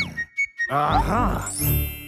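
Playful cartoon music with sound effects: a quick falling sweep, a short near-silent gap, then bouncy notes that bend up and down and a high rising sweep near the end.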